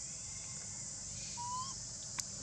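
Steady high-pitched drone of insects, with one short whistled call, rising slightly, about one and a half seconds in.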